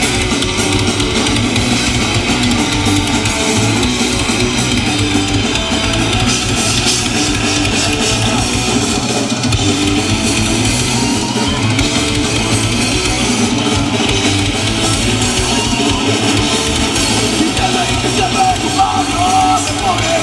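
Live punk band playing a song: electric guitars, bass guitar and drum kit, loud and steady throughout.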